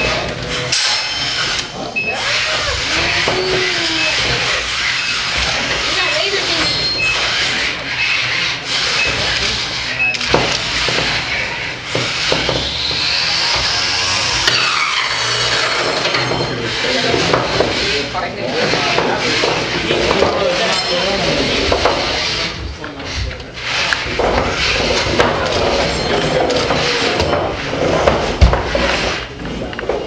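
Beetleweight combat robots fighting on a plywood arena floor: small electric motors whining, with scraping and knocks as the robots grind against each other and the arena wall. A rising motor whine comes midway. Spectators' voices run underneath.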